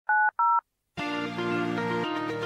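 Two quick telephone keypad (DTMF) tones, each a pair of pitches sounding together, then about a second in a held synthesizer chord begins, opening the programme's theme music.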